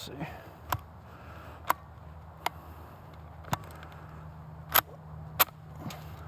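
Mauser C96 'broom handle' pistol being handled and its action worked: six sharp metal clicks spread unevenly over several seconds. A piece of brass has stuck in the pistol.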